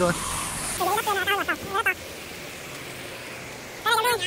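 Road traffic on a bridge: the tyre hiss of a vehicle going by fades out within the first second, leaving a steady lower hiss of traffic and wind. A man's voice talks briefly in between.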